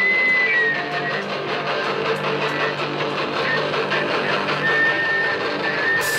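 Rock band playing an instrumental passage on electric guitars, bass guitar and drums, with no vocals. A held guitar note rings over the band at the start and again near the end.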